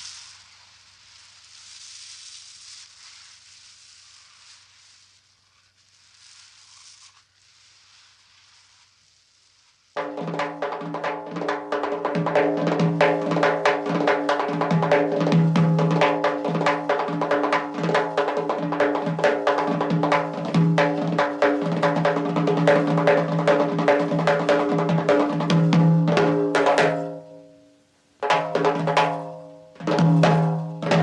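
Faint hiss, then, about a third of the way in, rapid, dense drumming on a large double-headed drum bursts in over a steady droning tone. It breaks off briefly near the end and starts again.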